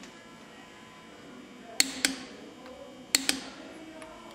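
Click-type torque wrench on an IH C-153 cylinder head bolt, breaking over at its 75 lb-ft setting. There are two pairs of sharp, ringing clicks a little over a second apart, the first pair about two seconds in.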